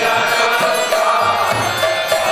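Devotional kirtan: voices chanting a mantra over rhythmic percussion that strikes at an even beat.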